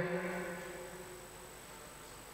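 A woman's drawn-out last syllable trails off and fades within the first half second. After that there is only faint, steady background hiss on the video-call audio line.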